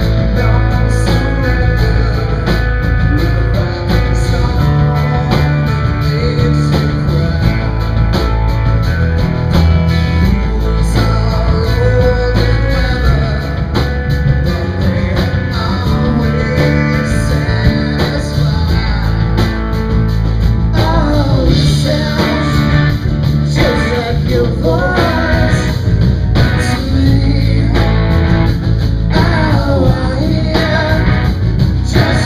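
A live rock band plays: electric and acoustic guitars, bass guitar and drums, with a lead singer.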